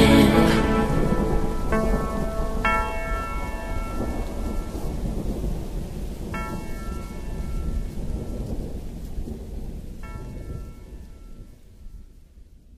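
Rain and low rumbling thunder, with four single ringing notes spaced out over it, the whole fading out slowly as the outro of a song.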